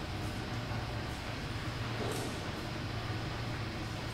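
A steady low hum of indoor background noise with a couple of faint knocks, one near the start and one about two seconds in, as people walk along a corridor.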